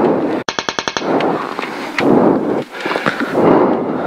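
Rally car running hard, heard from inside the cabin: engine and road noise swelling and dipping, with a short rapid burst of about a dozen sharp cracks about half a second in.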